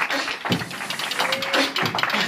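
A pair of metal spoons played as a rhythm instrument: fast, dense clattering clicks.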